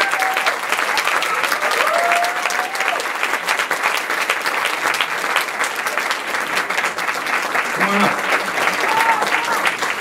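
Audience applauding steadily, with a few voices calling out over the clapping.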